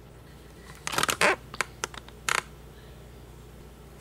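Handling noise from a small plastic-and-metal USB SD card reader being picked up and worked in the hands. A cluster of sharp clicks and scrapes comes about a second in, then two single clicks and a short scrape a little past two seconds.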